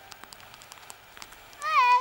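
Faint scattered ticks of cartoon rain, then near the end a short squeaky, cat-like vocal call from a cartoon character that falls in pitch and then holds.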